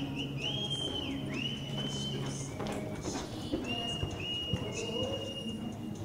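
A reining horse's hooves on arena dirt, with several long, level whistles from spectators, each swooping up at the start and some dropping away at the end.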